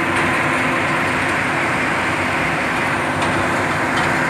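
Hot-mix asphalt drum-mix plant running: a loud, steady mechanical din with a faint steady hum through it.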